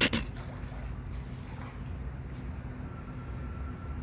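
Steady low background rumble during a pause in talk, with a short sharp sound right at the start.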